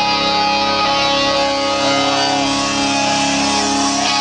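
Electric guitars of a live rock band holding a loud, sustained chord that rings steadily on amplified stage sound.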